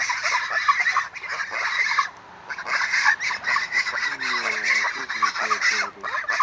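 A backyard poultry flock, geese among them, calling all at once in a dense, rapid chatter that dips briefly a little after two seconds in. Low, falling goose calls come through in the last two seconds.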